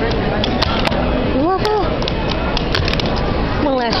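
A fingerboard clicking and clacking against a paper-covered surface as tricks are flicked, several sharp clicks scattered through, over a loud steady background noise.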